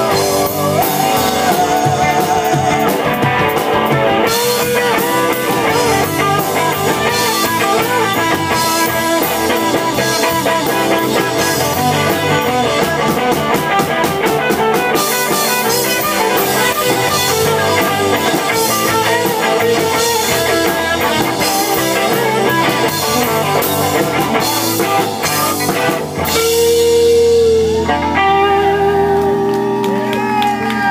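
Live rock band, electric guitars, bass and drum kit, playing an instrumental passage without vocals. About 26 seconds in the drums drop out and a final chord is held and rings out with bending guitar notes as the song ends.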